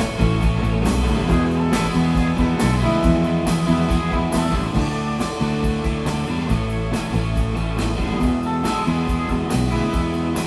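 Live rock band playing an instrumental passage on distorted electric guitar, electric bass and drums, with a steady beat and no vocals.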